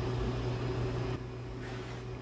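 Steady low mechanical hum in a small room, with a hiss over it that thins about a second in.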